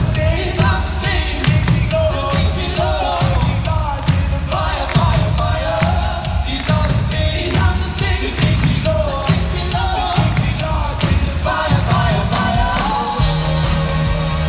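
Live pop-rock band playing in a large arena, with a steady drum and bass beat under short sung melodic phrases.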